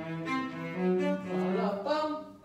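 Cello played with the bow: a melodic line of held notes, each lasting a fraction of a second before moving to the next.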